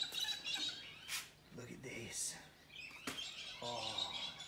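Small birds chirping in short high calls, strongest at the start and again near the end. There are two sharp clicks, about a second in and just after three seconds.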